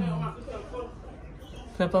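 Only speech: a man's voice talking in short phrases, with a steady low hum of room noise underneath.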